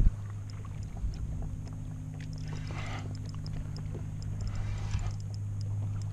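A steady low hum runs under faint, quick ticking from a spinning reel being wound in against a hooked fish, with a short knock at the very start.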